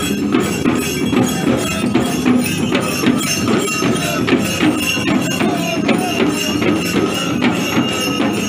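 Several large handheld frame drums beaten together in a steady processional rhythm of about two to three strokes a second, with metal bells jingling over them.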